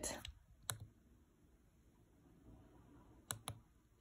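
Three small sharp clicks of the PortaPack H2+'s push buttons being pressed to start a radio capture recording: one under a second in, then two close together near the end.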